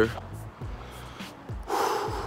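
A man takes a sharp, audible breath in through his mouth near the end, between sentences. Before it come a few soft low thumps.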